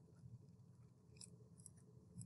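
Near silence with faint scratching of a pen writing on paper, a few light ticks about halfway through.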